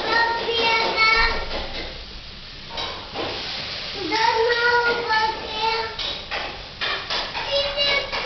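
A toddler's high-pitched voice babbling and calling out in stretches, without clear words, with a few short knocks.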